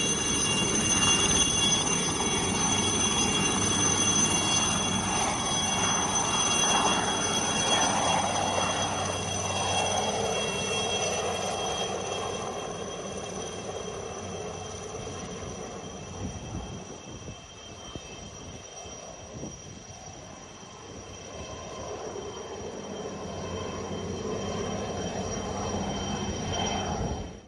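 Single-turbine light helicopter of the HAL Cheetah type: a steady high turbine whine over rotor noise as it lifts off and flies away. It is loud at first, fades from about halfway through as it climbs off into the distance, and grows somewhat louder again near the end.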